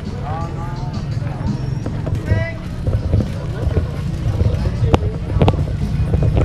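Street-market bustle: short bits of people's voices close by over a steady low rumble, with a few sharp clicks about five seconds in.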